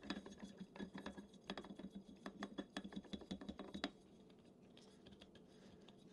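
Faint, irregular clicks and scrapes of a 700cc carbon air cylinder being screwed by hand onto a BRK Ghost PCP air rifle. They stop a little before four seconds in.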